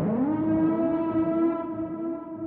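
A siren-like tone on the end-credits soundtrack. It swells up in pitch at the start, then holds one steady note over a low rumble.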